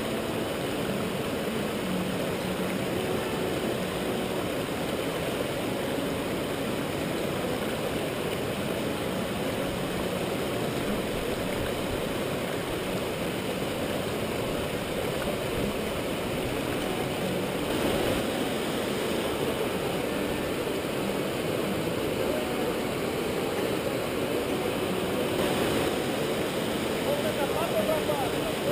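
Steady rushing of a rocky river's rapids, an even hiss of flowing water with no break.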